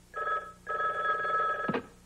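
Telephone ringing in two rings, a short one and then a longer one of about a second, answered for a wake-up call.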